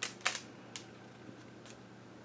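A few short clicks and taps from hands handling a thick, paint-layered art journal page. There are two sharp ones within the first half-second and a couple of fainter ticks later, over a low room hum.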